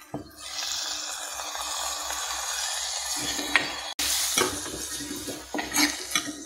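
Chopped tomatoes sizzling steadily as they hit hot oil in a pan of fried onions and green chillies. Near the end a steel ladle stirs and scrapes against the pot with a few clinks.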